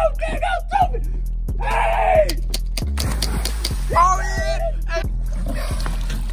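A splash about three seconds in, as a person's body hits lake water, followed by water noise for a couple of seconds, with shouts and yells around it and background music.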